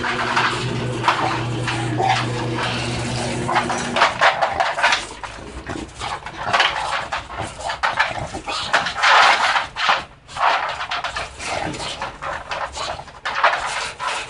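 A steady hum for the first four seconds, then short irregular noises of an American bully dog moving about in a wire crate.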